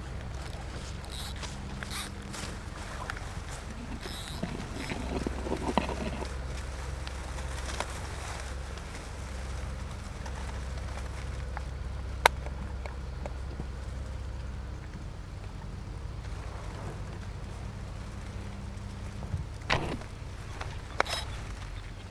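A steady low rumble with faint rustling of reeds and grass, and a single sharp click about twelve seconds in. Near the end come a couple of sharper snaps as a fishing slingshot is loosed and its arrow goes into the lagoon.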